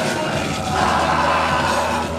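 Loud live music over a festival stage PA: a steady heavy bass under a dense, noisy mix, with no vocal line for these two seconds.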